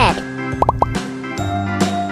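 Light children's background music with steady held notes, and three quick rising pops a little over half a second in.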